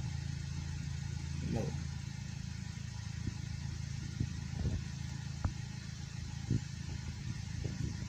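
Nissan Wingroad's HR15 engine idling steadily while it warms up, heard from inside the car, with a few faint clicks over it.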